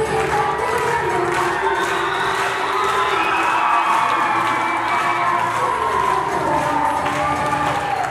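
A crowd of schoolchildren cheering and shouting over dance music playing in a large hall.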